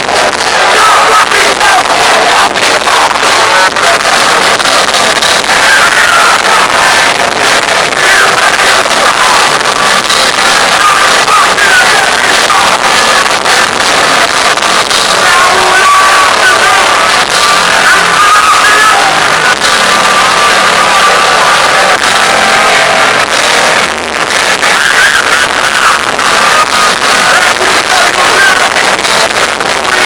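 Hardcore punk band playing live at a loud, unbroken level: distorted guitars, drums and shouted vocals, with crowd noise mixed in.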